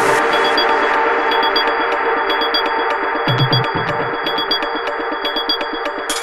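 Progressive electronic dance music: sustained synth chords over quick, regular ticking hi-hats, with no kick drum and a couple of low bass notes about three seconds in.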